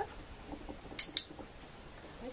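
Dog-training clicker pressed and released: two sharp clicks a fifth of a second apart, about a second in, marking the dog's correct move in clicker training.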